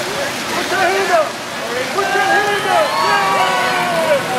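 Riders on a swinging gondola thrill ride screaming together, many overlapping rising and falling yells, over the steady splash of water fountains.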